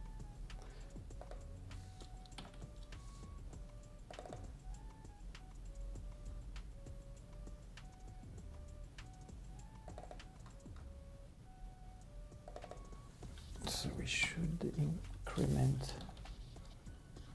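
Computer keyboard typing, scattered keystroke clicks, over quiet background music playing a simple stepping melody of single notes. Near the end comes a louder, longer burst of sound.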